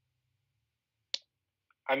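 Near silence with a single short, sharp click about a second in, then a man starts speaking near the end.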